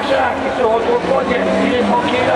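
Rallycross cars' engines running hard around the circuit, heard together with a man's race commentary.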